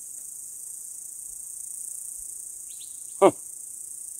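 Insects droning steadily and high-pitched in the surrounding brush, with no gunshot in this stretch.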